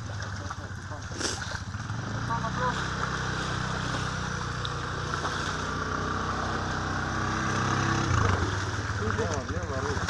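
IRBIS 200 quad bike's single-cylinder engine running under load as it is driven and pushed out of deep mud, the engine note building gradually and then dropping sharply about eight seconds in.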